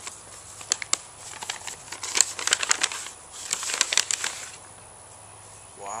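Paper envelope being torn and rustled open by hand, a run of crinkling and sharp crackles lasting about four seconds.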